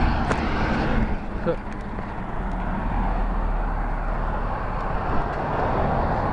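Street traffic with a car passing by, over a steady low rumble that grows stronger about halfway through.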